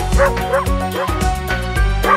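Cartoon puppy yapping in a quick run of short, high barks over upbeat children's backing music with a steady beat.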